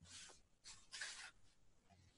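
Near silence, with a few faint, brief rustles: the first right at the start, one just after half a second, and a slightly longer one about a second in.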